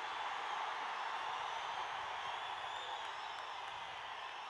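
Large audience cheering and clapping, a steady wash of crowd noise that eases slightly near the end.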